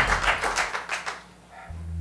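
A dramatic music cue fading out, with a patter of audience clapping that dies away after about a second. A low bass tone of new background music comes in near the end.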